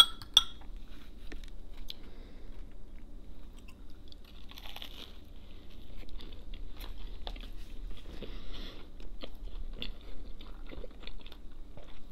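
Close-up chewing of a toasted grilled Reuben sandwich dipped in dressing: a bite into the crisp bread, then wet chewing with many small mouth clicks. A sharp click, the loudest sound, comes just after the start.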